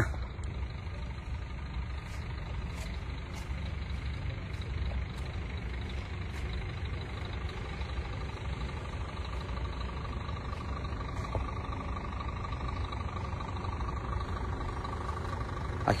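Steady low outdoor rumble with no clear single source. A faint steady whine joins about halfway through.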